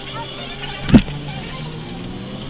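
Auto rickshaw (tuk tuk) engine running steadily while moving through traffic, heard from inside the open cab. There is one sharp knock about halfway through.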